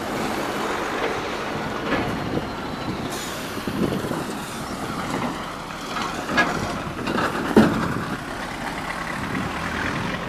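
Cars and a lorry driving past on a wet road: a steady tyre hiss and engine noise, with a few sharp knocks, the loudest about seven and a half seconds in.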